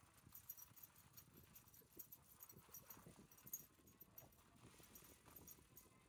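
Near silence, with faint irregular ticks and soft crunches.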